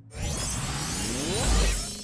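Cartoon magic sound effect: a loud, bright burst of sound with several rising sweeps, swelling to a deep boom about one and a half seconds in.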